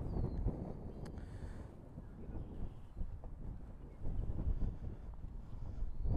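Wind buffeting the microphone, an uneven low rumble that grows louder about four seconds in.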